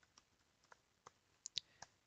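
Faint computer keyboard keystrokes, about half a dozen short clicks spaced unevenly as a word is typed.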